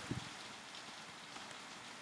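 Faint clicks of computer keyboard keys being typed over a steady low hiss.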